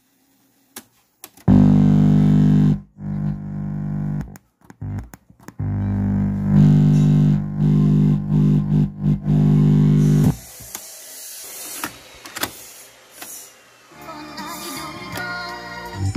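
Music played back from a cassette in the Sony CFS-715S boombox's tape deck through its own speakers. It starts after a second and a half of near silence, cuts in and out, is loudest from about 6 to 10 seconds in, then drops to a quieter, hissier stretch.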